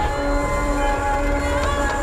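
Film score: a chord of several steady held tones at different pitches over a continuous low rumble, with one tone sliding briefly near the end.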